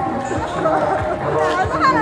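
Indistinct voices of several people talking over one another, with no clear words.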